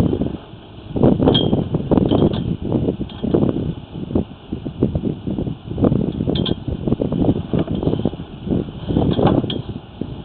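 Sewer inspection camera's push cable being fed into the drain: irregular knocking, rattling and rumbling as the cable is pushed along and the camera advances through the pipe.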